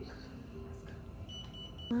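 A single high electronic beep lasting about half a second, near the end, over a low background hum.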